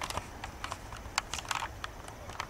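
Light, irregular clicks and ticks, about a dozen in two seconds, over a faint outdoor hiss.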